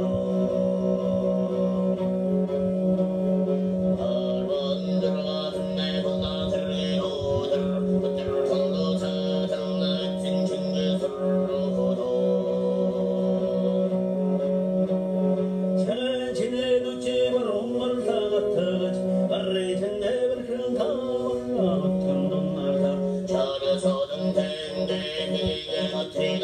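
Mongolian throat singing: a male voice holds a steady low drone while a melody moves in the overtones above it, with plucked-string accompaniment. The drone changes pitch for a few seconds in the middle of the passage.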